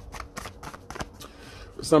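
A deck of tarot cards being shuffled by hand: a quick, irregular run of light card flicks and clicks.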